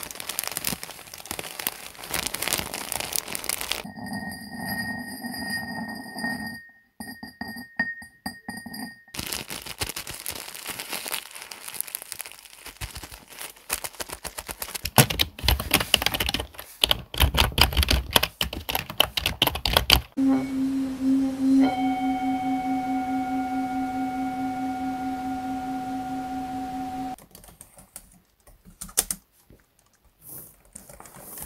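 A quick succession of trigger sounds. First the plastic wrapping of a bag of cotton wool crinkles under squeezing fingers; later come rapid taps and clicks of computer keyboard typing. Midway a steady pitched tone holds for several seconds, and there are sparse laptop key clicks near the end.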